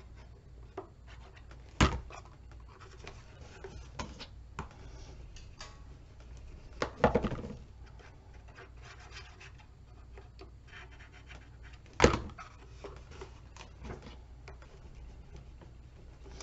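Paper and cardstock handled and pressed by hand, with quiet rustling and scraping, and three sharp knocks about two, seven and twelve seconds in.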